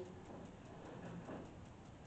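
Faint background hiss with a light, even ticking running through it, and a soft rustle about a second in.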